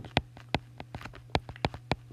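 A stylus tapping and ticking on a tablet screen while a word is handwritten: a quick, irregular run of sharp light clicks, about six a second, over a steady low electrical hum.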